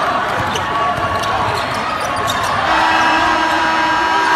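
Basketball dribbled on a hardwood gym floor, a series of sharp bounces, over crowd voices in the arena. A long held tone joins near the end.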